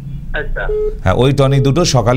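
Speech: a short stretch of a voice heard through a telephone line, then a man speaking close to the microphone.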